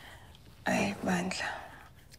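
Speech only: a woman's short, soft, breathy phrase spoken under her breath, about two-thirds of a second in, over quiet room tone.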